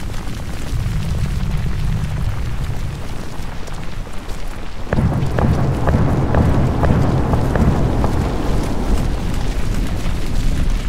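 Deep rumbling of a volcanic eruption that swells suddenly about five seconds in, with a series of sharp cracks and pops over the heavier rumble.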